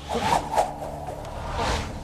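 Two swooshing sound effects for a cloaked figure whirling through the air, one just after the start and another near the end.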